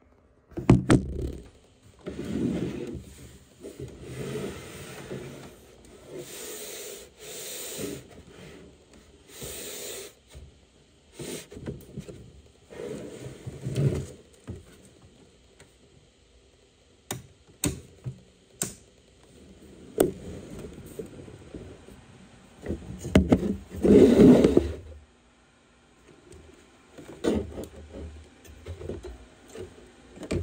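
Handling noise of a recording device being moved about and covered: irregular knocks, sharp clicks and scraping rubs. The loudest rubbing comes about three quarters of the way through.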